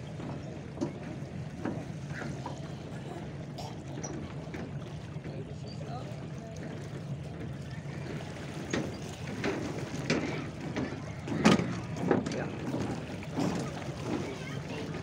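Lakeside ambience: a steady low hum, with short bursts of nearby voices from about eight seconds in, loudest around the eleven-to-twelve-second mark.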